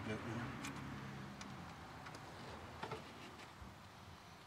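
A few faint, short clicks and light knocks of parts being handled in the engine bay, over a low steady hum.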